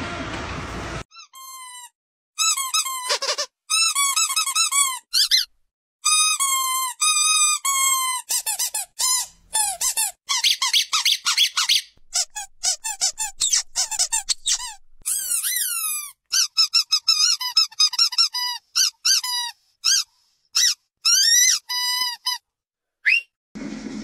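Dog's squeaky toy squeaking over and over: many short, high squeaks, some in fast runs and some drawn out and bending in pitch, with brief pauses between.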